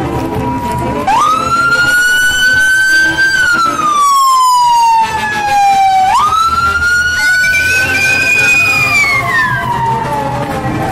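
A siren wailing twice: each time it jumps sharply up in pitch, holds, then slides slowly down. Faint music runs underneath.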